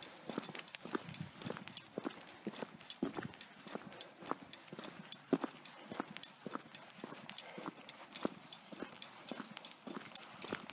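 Footsteps of a person walking on a gritty, gravel-strewn road: a steady run of sharp steps, several a second.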